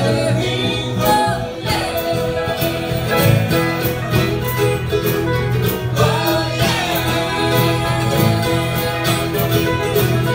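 Live country band playing a song with acoustic and electric guitars, drum kit and singing.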